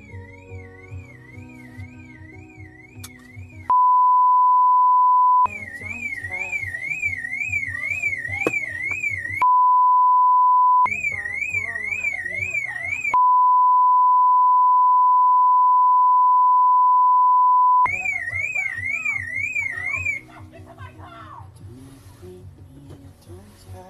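Three censor bleeps: a steady pure beep tone that completely blanks the other sound, the first and second each lasting about a second and a half to two seconds and the third nearly five seconds. Between them, background music with a wavering high tone plays, with voices mixed in under it.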